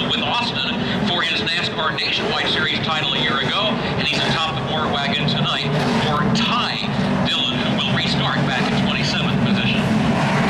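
The V8 engines of a pack of NASCAR Camping World Series race trucks running steadily at caution pace on a dirt oval, with the field passing close by midway. Grandstand crowd voices chatter over the engines.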